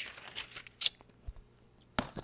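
Handling noise from a phone held close to paper: scattered light rustles and taps, a short loud scrape a little under a second in, a low thump soon after, and a sharp click at the end.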